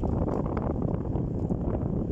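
A steady rushing noise that starts abruptly, like air moving over the microphone.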